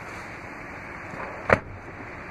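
A single sharp clunk about one and a half seconds in as the third-row Stow 'n Go seat of a 2017 Chrysler Pacifica is pulled up out of its floor well by its strap. Under it runs a steady low hiss.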